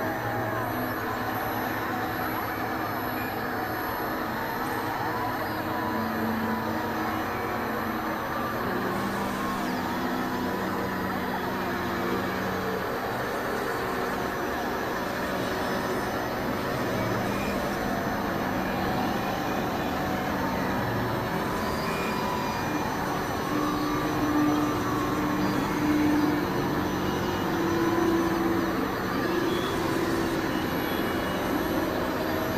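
Experimental electronic noise-drone music: a dense, rough synthesizer texture under held tones that step between pitches, getting a little louder near the end.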